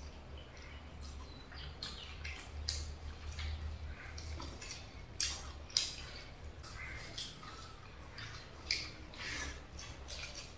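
Close-up eating sounds of people eating mutton curry and rice with their hands: irregular wet chewing, smacking and sucking clicks, a few louder ones about five to six seconds in, over a low steady hum.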